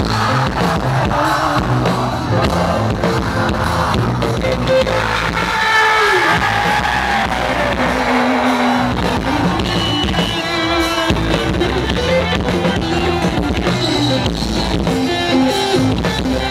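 Live rock band playing through a stage PA: electric guitar and bass guitar over a drum kit, loud and unbroken.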